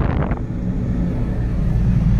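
Maruti Suzuki Eeco's four-cylinder engine running with a steady low hum inside the cabin while the ventilation blower is on. In the first half-second there is a brief rush of air from the dashboard vent blowing onto the microphone.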